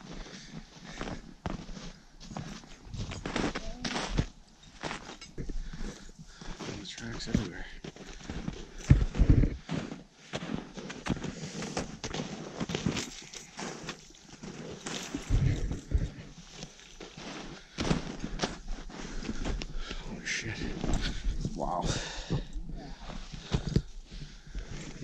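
Footsteps crunching and plunging through deep snow in winter boots, an irregular run of soft crunches and thumps with a few heavier steps.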